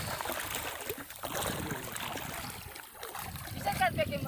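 Shallow water sloshing and splashing around the legs of people wading, with voices in the background.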